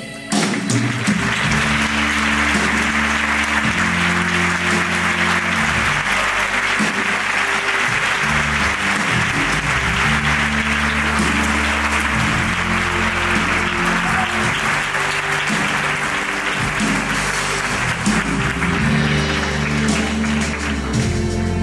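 Audience applauding steadily as a performer is welcomed, with low sustained instrumental notes playing beneath the clapping.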